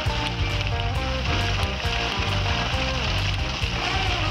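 Water pumped out through a two-inch discharge pipe, pouring steadily from its outlet with a continuous hiss, under background music with held notes.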